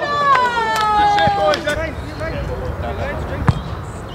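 A long drawn-out cry from one voice, sliding down in pitch over the first second and a half, as players react on the football pitch. After it, fainter outdoor noise with distant voices and a single sharp knock about three and a half seconds in.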